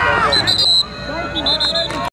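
A referee's whistle blown in two short, high blasts about a second apart, over spectators shouting.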